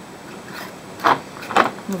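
Metal screw band being twisted onto a glass canning jar, with two short scraping sounds about a second in and half a second later.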